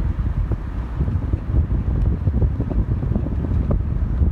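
Wind rushing through an open window of a moving car, buffeting the microphone with a loud, gusting low rumble.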